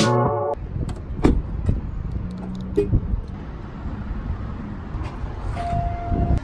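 Music cuts off about half a second in, leaving the low rumble of a car driving, with scattered clicks and knocks. A short steady beep sounds near the end.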